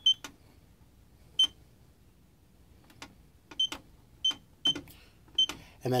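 NAPCO FireLink fire alarm control panel keypad annunciator giving a click and a short high beep at each button press as the master code is keyed in, about seven presses spaced unevenly.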